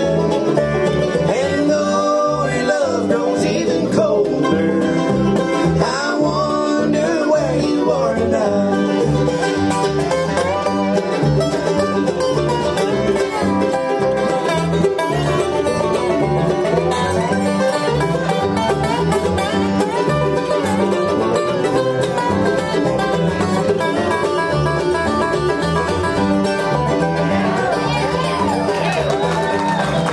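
Live bluegrass band playing: banjo, acoustic guitar, mandolin, dobro and upright bass together at a steady, driving tempo.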